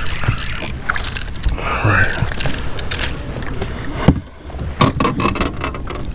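A small fishing boat on open water: steady rushing noise with scattered knocks and rattles against the hull and gear, and one sharp knock about four seconds in.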